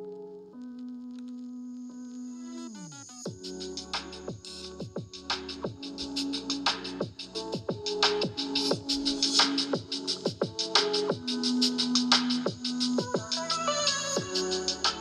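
Electronic music played through the built-in speakers of a 2021 14-inch MacBook Pro. Held synth notes slide down in pitch about three seconds in, then a beat of drum hits over a surprising amount of bass takes over, getting louder as the volume is turned up.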